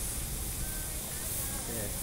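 Steady hiss of steam and low rumble from a JNR C57 steam locomotive, with no chuffing rhythm.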